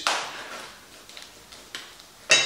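Chef's knife slitting open a plastic bag of raw diced beef: a sudden rustling swish of cut plastic that fades away, followed by a few faint light clicks.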